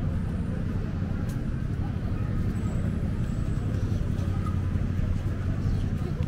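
Steady low rumble of city street traffic, with car engines running at an intersection.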